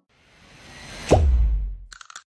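Intro sound effect: a whoosh swells for about a second, then a fast downward-sweeping tone drops into a deep boom that fades out.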